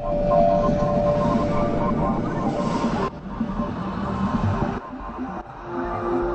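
Music with sustained tones, playing back from a video on the computer; the music changes abruptly about three seconds in and again shortly before the end.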